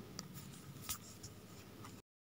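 Faint background hiss with a few soft, scattered clicks, the clearest about a second in.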